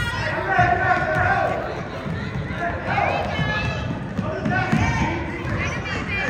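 A basketball being dribbled on a hardwood gym floor, with spectators' voices and calls going on throughout.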